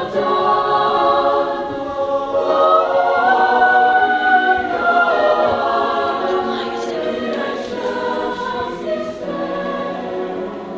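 High school choir singing a slow piece in long held chords, swelling in the middle and easing off toward the end.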